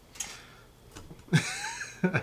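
Hazelnut liqueur poured from a bottle into a glass: a short splash and gurgle about a second and a half in, with a pitch that rises briefly as the liquid goes in.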